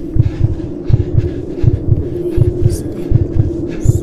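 Heartbeat-like double thumps, repeating a little faster than once a second, over a steady low hum.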